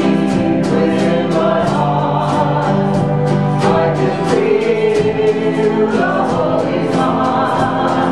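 A small worship band performing a contemporary Christian song: women's voices singing together over strummed acoustic guitar and band, with a steady beat.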